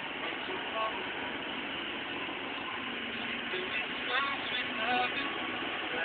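Steady road and engine noise heard inside a car's cabin, with a few short bits of voice about a second in and again around four and five seconds in.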